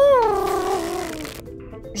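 A cartoon owl's call: one long cry that rises a little, then falls and wavers as it fades, over background music.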